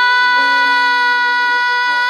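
A woman singing one long, straight high note on the final word "line", loud and unbroken, with a quieter backing accompaniment changing chords underneath.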